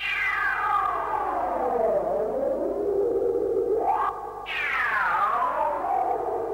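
Electronic synthesizer sound effect: a note gliding down in pitch over about two seconds, then holding a lower wavering tone. About four seconds in there is a brief rising sweep and a short dip, then a second falling glide begins.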